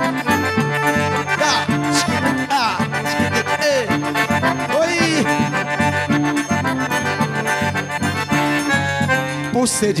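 Forró played live on two piano accordions, an instrumental passage of held chords and quick runs over a steady bass beat from a zabumba drum. Singing comes back in right at the end.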